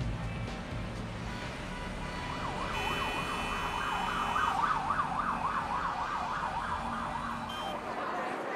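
Emergency vehicle siren rising and falling rapidly, about three swings a second, over a steady background of city traffic noise. It comes in about two seconds in and fades out near the end.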